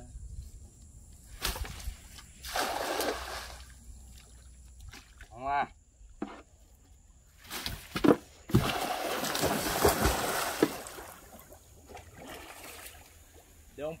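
Knocks on a small boat's hull, then a person going overboard into the lagoon about eight seconds in: a loud splash and a couple of seconds of churning, sloshing water.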